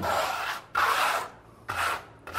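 Trowel scraping wet Backstop NT Texture coating over reinforcing tape on a sheathing board to embed the tape: three hissing strokes, each about half a second or shorter.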